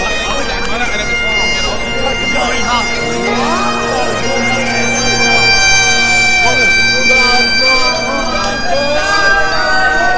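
Highland bagpipes playing a tune over their steady drones, with voices talking over them.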